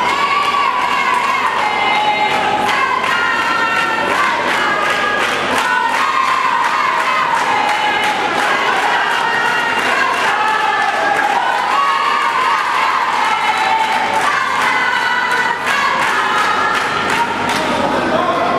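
Boxing crowd shouting and cheering, many voices at once rising and falling with the exchanges, with frequent sharp smacks through it.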